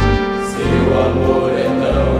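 Music: a gospel hymn sung by a young men's choir over instrumental backing, with sustained chords and a pulsing bass line.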